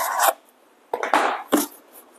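Cardboard packing insert scraping and rubbing as it is pulled out of the packaging: a rasping scrape at the start, then another about a second in.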